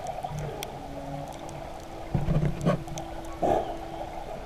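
Muffled underwater sound from a camera held beneath the sea surface: water sloshing and thudding against the camera housing as the snorkeler swims, with three dull thumps in the second half. A faint steady hum starts about a second in and runs on.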